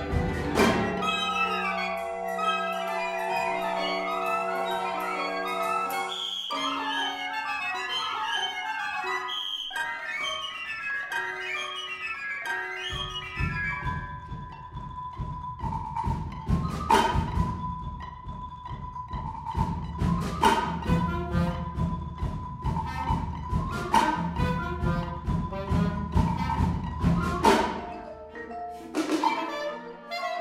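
Marimba played with mallets in quick figures against a chamber orchestra, in contemporary concert music. From about halfway, a held high note and a low rumble sit under the texture, cut by loud accented strikes about every three and a half seconds.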